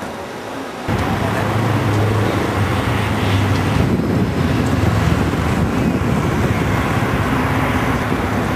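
Steady city traffic noise that comes in suddenly about a second in.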